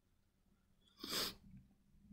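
A short, sharp burst of breath from a person, like a stifled sneeze or a quick snort through the nose, about a second in, with a fainter breath just after; otherwise near silence.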